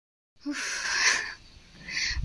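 A short gap of silence, then a woman's breathy exhale lasting about a second, close to the microphone, with another short breath near the end.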